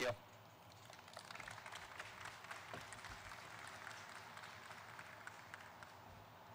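Light, faint applause from a small outdoor audience, scattered hand claps starting about a second in and running on steadily.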